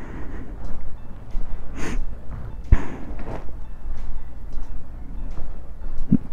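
Handling and rustling noise on a body-worn camera as the wearer walks, with a few soft knocks and one sharp click a little under three seconds in, over a steady low hum.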